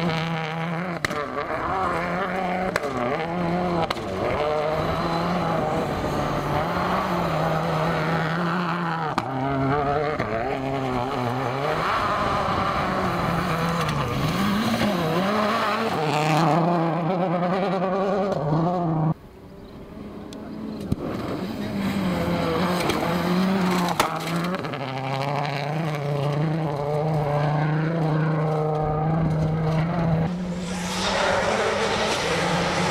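Suzuki SX4 WRC rally car's turbocharged four-cylinder engine running hard, its pitch rising and falling with repeated revving and gear changes. The sound drops suddenly about two-thirds of the way in, then builds back up.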